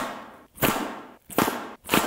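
Cold Steel blowgun fired four times in quick succession: each shot is a sharp burst of breath through the tube that dies away within about half a second.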